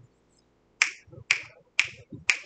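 Finger snapping: three crisp snaps about half a second apart, in a steady beat.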